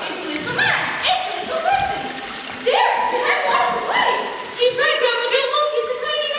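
Several children's voices calling out and exclaiming over one another, their pitch swooping up and down.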